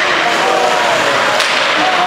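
Ice hockey play on a rink: skates scraping the ice in a steady hiss, with one sharp crack about a second and a half in.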